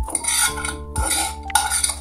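Metal kitchen utensil scraping and clinking against dishware in two strokes of about a second each.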